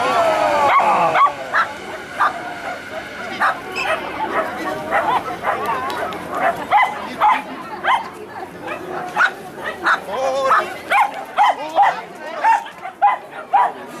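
A dog barking in short, high yips over and over, about one or two a second, excited as it runs an agility course.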